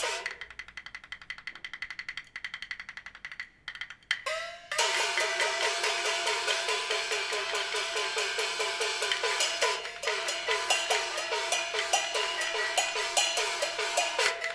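Peking opera percussion ensemble accompanying stage combat. It opens with a fast roll of sharp drum and clapper strokes that thins out. About five seconds in, loud, repeated gong strikes join, about three a second, each ringing with a pitch that slides down, over cymbal crashes.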